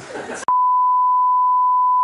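Television test-card tone over colour bars: one steady, high, pure beep that cuts in abruptly about half a second in and holds unchanged.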